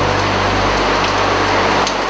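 Heavy rain falling, a loud, even hiss that comes in suddenly just before this moment and holds steady.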